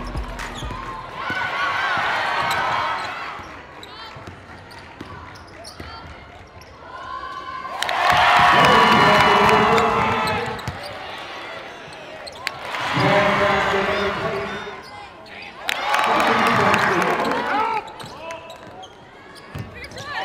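Live game sound from a basketball court: a ball dribbling on hardwood and sneakers squeaking, with the crowd cheering and shouting in four loud swells.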